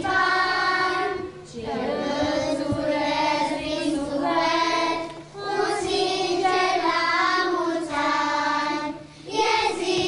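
A group of young children singing a song together, in sung phrases broken by short pauses about every four seconds.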